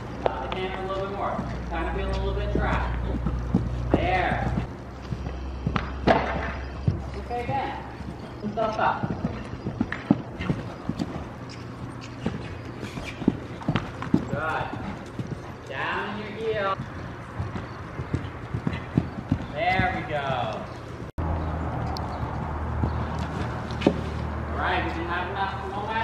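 Hoofbeats of a horse cantering on the dirt footing of an indoor riding arena, a run of soft irregular thuds, with short bursts of voices talking between them.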